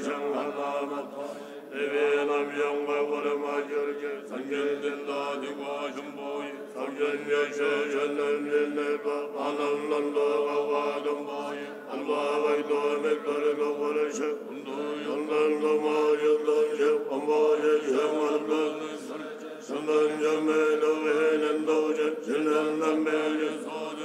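Buddhist monks chanting prayers together in a low, steady unison recitation, breaking briefly every few seconds between phrases.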